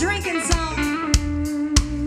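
Live country band playing: drum hits about every 0.6 s over a steady bass line, with an electric guitar holding bending lead notes.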